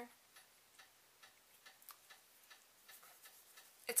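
Wall-mounted room heater ticking faintly and irregularly, about two or three ticks a second, while it runs and heats.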